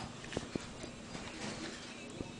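A domestic cat rubbing its face against a metal window handle while being scratched behind the ears, with a couple of light taps against the handle about half a second in.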